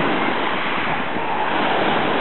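Sea water washing and lapping in small waves: a steady rush of surf noise.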